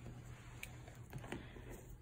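Quiet room with a few faint, soft clicks and taps from small items being handled on a table, about halfway through.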